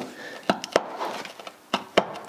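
A hand tool working at the corroded headlamp fittings in a classic Mini's front wing: four short, sharp clicks spaced unevenly, with faint room noise between them.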